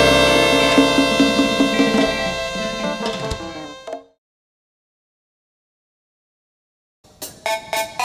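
Live band music: a final held chord rings out and fades away over the first four seconds. About three seconds of dead silence follow. Then the next song starts with a few sharp drum hits.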